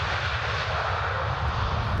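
Jet airliner engines running: a steady, even roar with a deep low rumble underneath.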